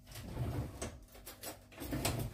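A kitchen drawer being opened and rummaged through for a spoon: a low sliding rumble with a few light clicks and knocks.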